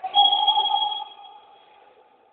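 A single steady-pitched signal blast about a second long, dying away in the hall's echo, marking a stop in play.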